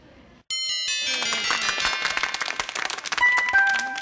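A short television jingle. It starts suddenly about half a second in with a bright, bell-like chime, then runs into upbeat music with a fast, busy beat.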